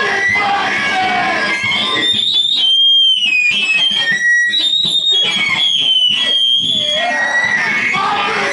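Live power electronics: loud, harsh distorted electronic noise with screamed vocals. From about two seconds in, shrill feedback tones whine and waver in pitch over the noise, giving way to dense noise again near the end.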